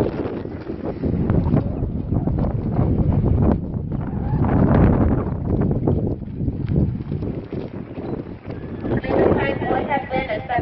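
A horse galloping on a dirt arena during a barrel-racing run, with people's voices coming in near the end.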